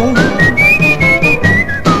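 1950s R&B record playing an instrumental fill between vocal lines: a high, pure-toned melody line steps up and then falls back, over bass and drums.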